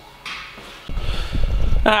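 Low, irregular rumbling and bumping from about a second in, the sound of a hand-held camera and its microphone being handled and moved. A man's brief "ah" comes at the very end.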